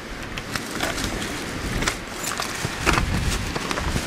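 Storm wind buffeting the microphone in a deep low rumble, with several short scrapes and crackles scattered through.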